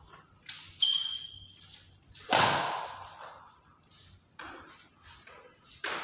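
Badminton rackets hitting a shuttlecock during a rally in a large echoing hall: a string of sharp smacks at irregular intervals, the loudest a little after two seconds in. There is a short high squeak just after one second in.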